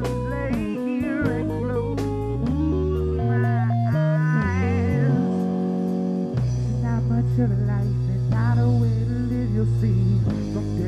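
A live rock band of electric guitar, electric bass and drum kit playing an instrumental passage. Notes that bend and waver, likely from the lead guitar, are carried over held bass notes and even cymbal strikes.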